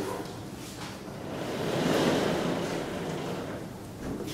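Vertical sliding blackboard panels being pushed along their tracks: a smooth swell of noise that rises to a peak about halfway through and then fades.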